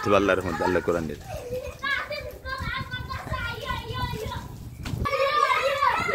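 Several children shouting and calling out over one another, with a low rumbling noise underneath through the middle.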